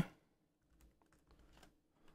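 Faint, scattered keystrokes on a laptop keyboard as a short word is typed.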